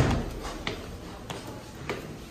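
Footsteps on a carpeted staircase with metal stair-edge strips, about one step every two-thirds of a second, the first step the loudest thump.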